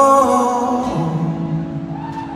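Live rock band in concert: a male lead singer holds the end of a long sung note that fades about a quarter second in, over acoustic guitar and a steady sustained chord. A lower held note comes in about a second in.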